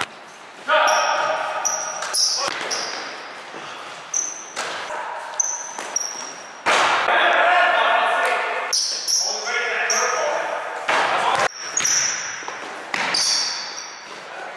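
Basketball bouncing on a hardwood gym floor in repeated sharp knocks that echo around the hall, with short high squeaks of sneakers on the court.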